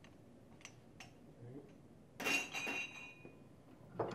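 A centrifuge's four-place swinging-bucket rotor, just lifted off its drive spindle, handled with a couple of light clicks and then set down with a clink that rings briefly, about two seconds in.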